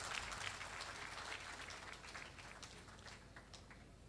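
Scattered audience applause, faint and dying away over a few seconds.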